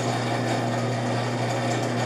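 Steady low hum of a small motor running, even and unchanging.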